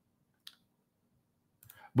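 Near silence broken by one short, sharp click about half a second in; a man's voice starts just at the end.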